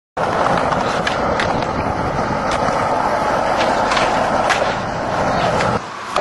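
Skateboard wheels rolling steadily over concrete, with a few sharp clicks scattered through the roll. The rolling cuts off suddenly just before the end.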